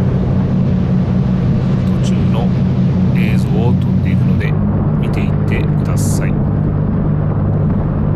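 A motor cruiser's engines running under way at speed, a steady low drone over the rush of the churning wake and wind. The drone shifts slightly about four and a half seconds in.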